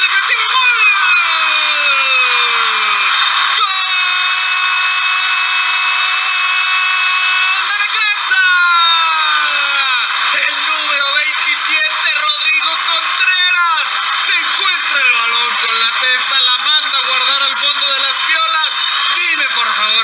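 Spanish-language radio football commentator's goal call: a long drawn-out shout, held at one pitch for about four seconds with a slide down at either end, then fast, excited shouted commentary. It marks the equalising goal.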